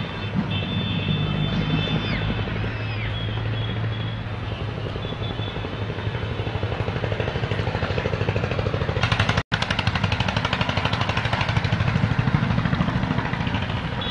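An engine running with a fast, even chugging beat that grows plain about halfway in, over a steady low hum, with a split-second dropout about two-thirds of the way through.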